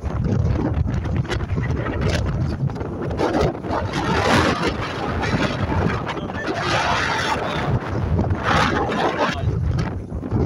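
Wind buffeting the microphone on the open deck of a catamaran ferry under way, over a steady low rumble of the boat's engines and water. The wind rises in gusts twice, about four seconds in and near the end.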